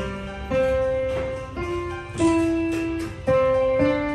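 Kawai digital piano played slowly: single notes and small chords struck a little over once a second, each left to ring and fade before the next.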